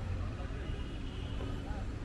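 Busy street ambience: a steady low traffic rumble with indistinct voices of passers-by.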